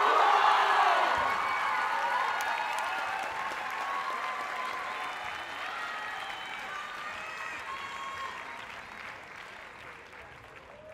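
Audience applauding and cheering with shouts and whoops. It is loudest about the first second in and slowly dies down.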